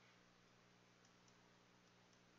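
Near silence: a low steady electrical hum with a few faint ticks of a stylus on a drawing tablet.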